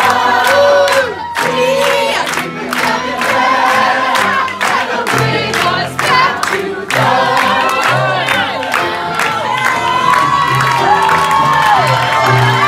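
Several voices singing long held notes in harmony with a live audience cheering over them.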